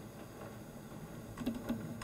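Quiet room tone with two soft clicks, about a quarter second apart near the end, from someone operating a computer.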